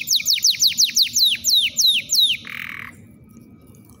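Male domestic canary of the Belgian breed singing: a phrase of about a dozen clear whistled notes, each sliding steeply downward, coming more slowly towards the end and closing on a short buzzy note.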